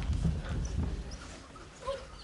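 Children playing rats squeak and scuffle on the stage floor as they huddle together. The sound dies down in the second half.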